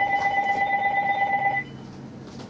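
Telephone ringing: one electronic ring with a fast warble, about ten pulses a second, that cuts off about a second and a half in.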